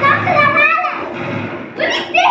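Children speaking lines into handheld microphones, their voices amplified over the hall's sound system.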